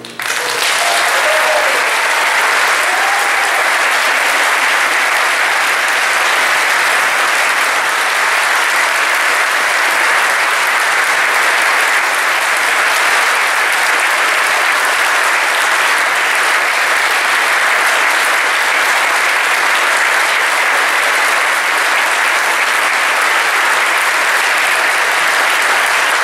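Large concert audience applauding steadily at the end of an orchestral performance, a dense, even clapping that holds at one level throughout.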